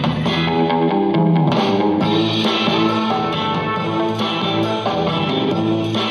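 Guitar-led music playing loudly through a Dyplay 120-watt 2.1-channel soundbar, its volume turned all the way up.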